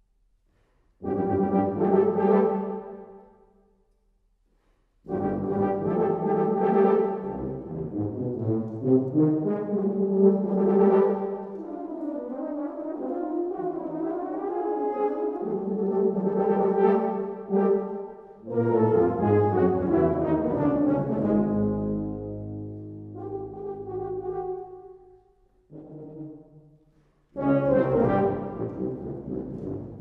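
Tuba and euphonium ensemble playing loud, held brass chords. One chord sounds about a second in; after a short silence a long, continuous passage begins around five seconds, broken by brief pauses near the end.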